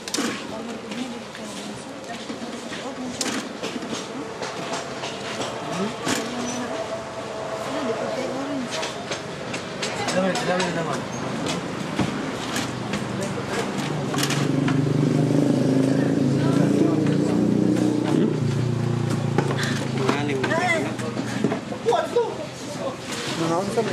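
Several people talking, with scattered clicks and knocks from handling durians on a wooden table. In the second half a motor vehicle passes close by, louder for several seconds.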